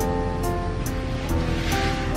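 Background music: sustained notes over a steady beat, with a high tick about two and a half times a second and a swelling hiss near the end.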